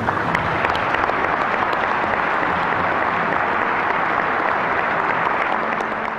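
A large audience applauding: dense, steady clapping from a full legislative chamber.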